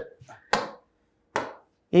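Two sharp taps about a second apart, a stylus tapping an interactive display screen.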